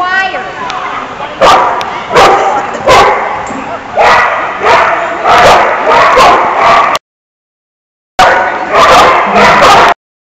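A golden retriever barking over and over, about one loud bark every three quarters of a second, with the sound dropping out for about a second partway through.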